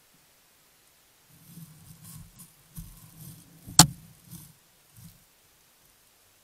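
A black bear bumping and rubbing against a trail camera at close range: low, irregular scraping and rustling on the camera, with one sharp knock a little before four seconds in and a softer bump about a second later.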